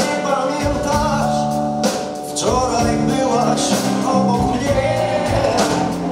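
Live blues-rock band playing, with guitar, drums and a male singer's vocals.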